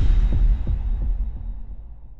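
Deep bass impact from a logo-intro sound effect, right after a rising sweep, followed by a low throbbing rumble that fades away.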